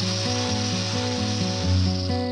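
Angle grinder with an abrasive disc grinding the horn of a dairy cow's hind hoof, a steady high hiss-like rasp, as the sole is modelled out to keep a sole ulcer from forming.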